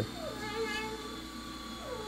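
A toddler's long, drawn-out wordless vocal sound, high-pitched, dipping at first, then held for more than a second and turning upward at the end. A faint steady hum lies underneath.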